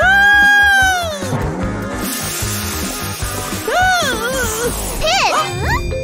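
Cartoon character's high-pitched shocked cry, held for about a second and falling away at the end, over background music; later, wavering, wobbling vocal sounds and quick pitch glides.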